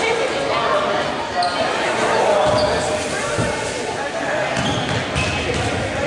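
Spectators talking in a school gymnasium, with a basketball bouncing on the hardwood court.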